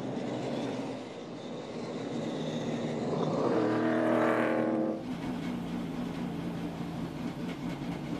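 NASCAR Cup Series stock cars' V8 engines at racing speed. One car's engine note rises as it comes closer and is loudest about four to five seconds in, then cuts off suddenly, leaving a steadier, lower engine drone.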